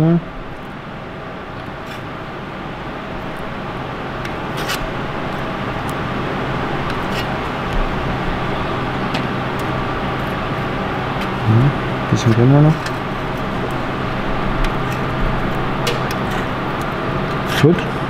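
A steady machine hum with several fixed tones, slowly growing louder, with a few sharp clicks from a hand-lever sheet-metal shrinker-stretcher squeezing a metal strip in its jaws.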